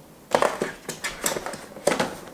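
Hands handling a cardboard box and its packaging on a desk: a string of irregular light knocks and rustles, the sharpest near the end.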